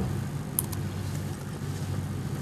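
Steady low hum of studio room tone, with a faint click about half a second in.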